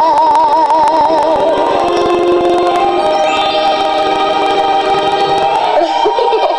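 A young girl's singing voice holds a note with steady vibrato that ends about a second and a half in, over a music backing track that carries on with sustained chords.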